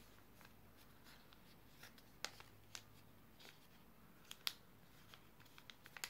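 A square of lined paper being folded and creased by hand: soft paper rustles and a scatter of short, sharp crackles, the loudest about two and four and a half seconds in.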